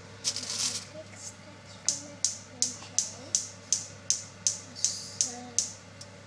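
A brief rustle near the start, then a run of about eleven sharp, evenly spaced taps, nearly three a second, that stop shortly before the end.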